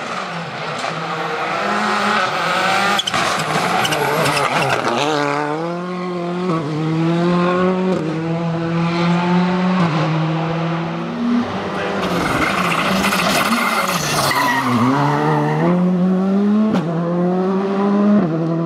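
Rally car engine at full throttle on a gravel stage, the revs climbing and then dropping at each gear change, several times over.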